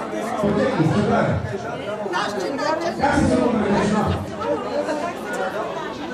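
Several people talking over one another at once: loud, overlapping chatter of a seated group.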